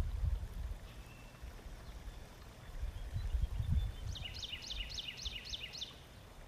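A bird calling in a quick series of about seven descending chirps, roughly three a second, starting about four seconds in, over a low rumble like wind or running water.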